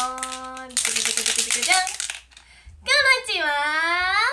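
A young woman's voice sings the held last note of a 'pin-pon-pan-pōn' announcement chime. It runs into a fast, even rattling trill for about a second and a half, then a long drawn-out vocal slide that dips and rises again.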